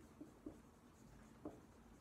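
Faint strokes of a dry-erase marker writing on a whiteboard, a few short scratches.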